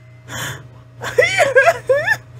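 A short breath, then a high-pitched voice that wavers up and down in pitch, without clear words.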